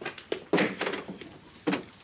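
Quick footsteps and a door being opened: a handful of irregular thumps and clacks, the loudest about half a second in.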